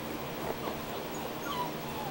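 A young puppy gives a few short, high whimpers, the clearest one sliding down in pitch about one and a half seconds in. A box fan runs with a steady hiss underneath.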